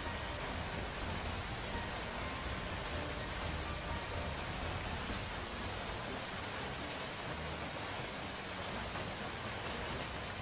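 Steady, even rush of a narrow waterfall falling down a rock face into a pool.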